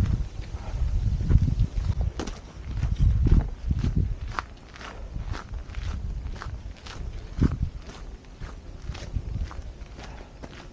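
Footsteps of a hiker walking on a packed dirt forest trail, about two steps a second. A heavy low rumble on the microphone sits under the first few seconds and then eases off.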